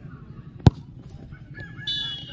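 A football kicked hard from the penalty spot: one sharp thud of a foot striking the ball about two-thirds of a second in. Near the end a high, drawn-out cry starts up.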